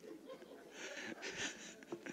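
Faint breathing and soft, breathy chuckling from a man between spoken lines.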